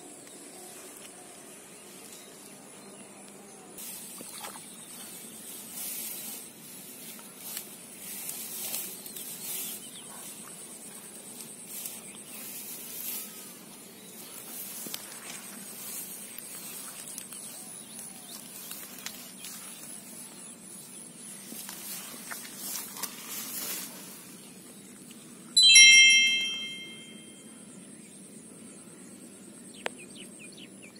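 Hands splashing and squelching in a shallow muddy water hole among grass, in irregular bursts, over a steady high insect drone. Near the end a sudden loud ringing tone sounds once and fades over a second or two.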